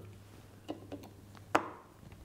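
Faint small metal ticks of a T6 Torx screwdriver working the screws of a lens mount, with one sharper click about one and a half seconds in.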